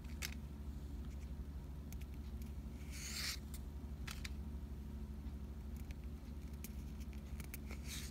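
Pokémon trading cards being slid and flipped one by one in the hand: light card clicks and a short papery swish about three seconds in, over a steady low hum.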